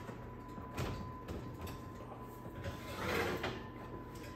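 Metal muffin tin and oven rack in a wall oven: a few light clinks as the tin goes in, then a short scrape about three seconds in as the rack slides.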